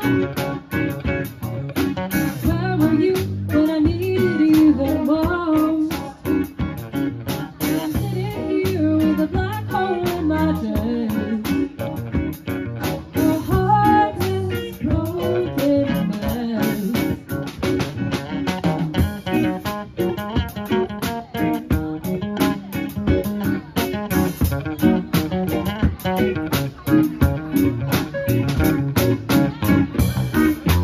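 Live band playing a funk-soul cover, electric guitar, bass guitar, drum kit and keyboard together at a steady groove, with a woman singing lead over them.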